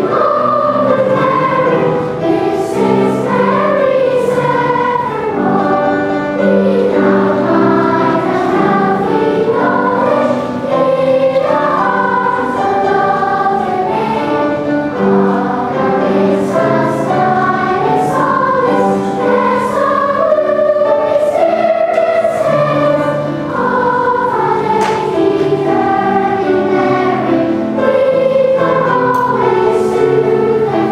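A choir of young schoolgirls singing their school song together in a flowing, hymn-like melody, with sustained lower notes underneath.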